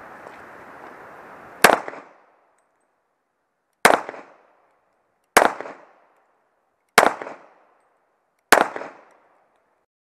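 Five shots from a Para Pro Comp 40, a single-stack 1911 pistol in .40, fired slowly, one and a half to two seconds apart, each with a short echo. A steady hiss runs under the first shot and stops with it.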